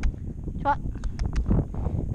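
Wind rumbling on the microphone of a rider's action camera while a horse is ridden, with the spoken command 'trot' and a few quick sharp clicks about a second in.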